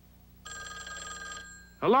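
Telephone bell ringing once, for about a second.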